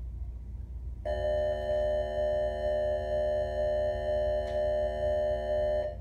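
Electronic school bell tone sounding for about five seconds, a steady chord of fixed pitches that pulses slightly about twice a second, starting about a second in.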